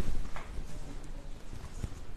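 Irregular soft, low thumps and knocks, with no speech.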